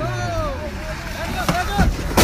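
Several short shouts, each rising and falling in pitch, over a car engine whose low note drops away about half a second in.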